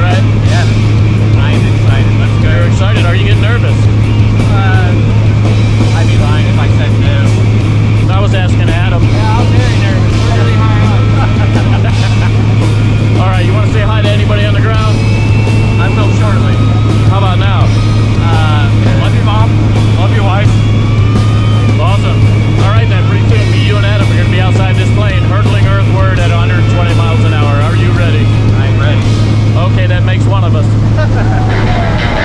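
Jump plane's engine and propeller drone heard from inside the cabin during the climb to altitude, a loud steady low hum that does not change, with voices over it.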